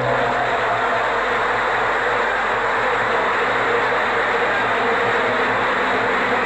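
Large audience applauding, steady dense clapping right after the song's final note.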